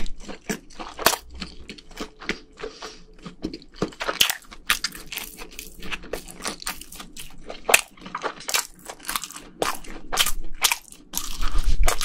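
Close-miked chewing of a bite of sotteok, a skewer of sausage and rice cake in red sauce: quick, irregular mouth clicks and smacks, getting louder near the end.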